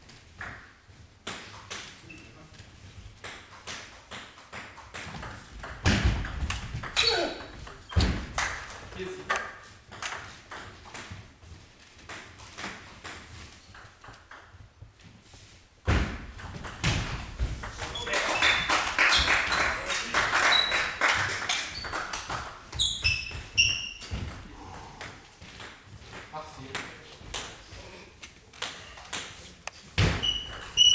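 Table tennis rallies: a celluloid ball clicking off the table and the rubber bats in quick back-and-forth runs, with pauses between points and echo from the hall.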